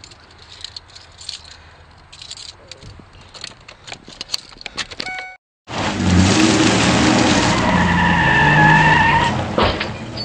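Rustling and small clicks, then, after a sudden cut about halfway in, a loud burst of a pickup truck's tyres spinning and squealing as it peels out, lasting about four seconds before easing off.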